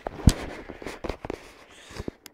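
Handling noise of a hand-held camera being swung round: one sharp knock about a quarter second in, then several lighter knocks and rubbing.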